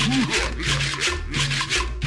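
Cumbia music with a loud rasping scraper keeping a rapid, even scraping rhythm over a bass line.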